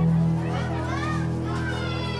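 Children's voices and chatter in a crowded hallway, with steady background music underneath that is louder in the first half second.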